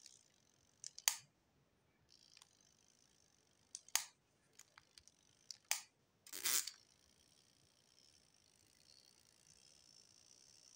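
Handling noise from a small plastic timer motor being turned over in the fingers: a few irregular sharp clicks and a brief scrape of plastic about six and a half seconds in, over a faint steady hiss.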